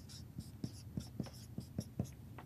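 Dry-erase marker writing on a whiteboard: a quick, irregular run of short strokes and taps, several a second, as letters are written.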